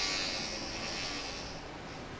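A steady high-pitched buzz that fades and stops a little before the end.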